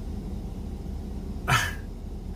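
Steady low rumble of a vehicle running, heard from inside the pickup's cab, with one brief sharp sound about one and a half seconds in.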